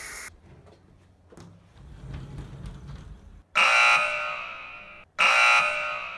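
An electronic alarm tone sounds twice, about a second and a half each and fading off, the second starting under two seconds after the first.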